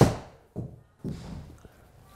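Callaway Apex 19 forged 8-iron striking a golf ball off a hitting mat in an indoor simulator bay, played with a shortened, less-than-full swing: one sharp crack right at the start that dies away within about half a second. The contact is solid, a good hit.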